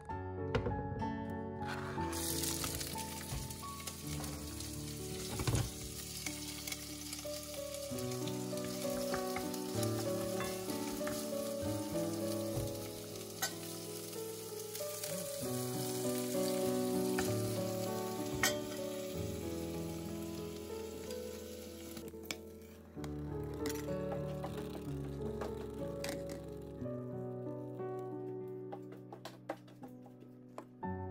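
Chopped onion and scallions sizzling as they fry in an enamelled pot, stirred now and then with a wooden spoon. The sizzle starts about two seconds in and fades out about two-thirds of the way through, with background music playing throughout.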